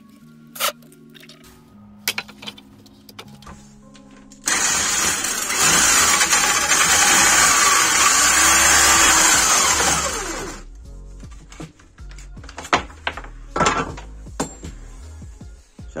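Corded electric drill with a 5 cm hole saw cutting a disc out of a wooden board. It starts suddenly about four and a half seconds in, runs loud and steady for about six seconds, then winds down.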